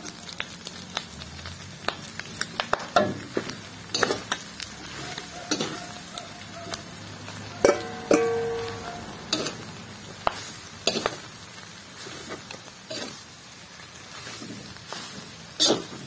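Metal spatula scraping and clinking in a steel wok over a low sizzle as sautéed pork and aromatics are stirred. About seven and a half seconds in, a loud metal clang that rings briefly: the metal bowl of grated santol striking the wok as it is tipped in. The clinking stirring then goes on through the santol.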